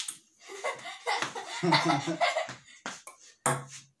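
A person laughing for about two seconds, then a celluloid ping-pong ball clicking a few times off the paddle and the wooden dining-table top.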